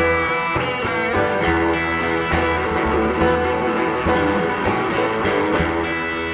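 Live instrumental passage of guitars and cello with no singing: steady rhythmic strumming under sustained notes.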